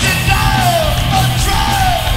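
Live hardcore punk band playing loud: distorted electric guitars and drums under the singer yelling into the microphone, his voice sliding down in pitch twice.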